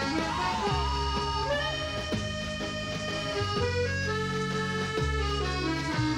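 Accordion music: sustained chords changing every second or so over held bass notes, with a brief wavering, sliding sound in the first second.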